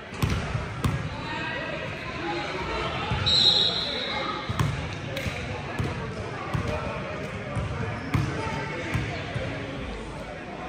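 A basketball bouncing on a gym's hardwood floor, irregular low thumps that echo in the large hall, over indistinct voices of players and spectators. A short high tone sounds about three and a half seconds in.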